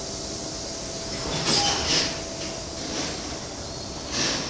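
Passenger train of Mark 3 coaches pulling slowly out of the station, a steady low rumble with a faint hum. Brief hissing comes about one and a half seconds in.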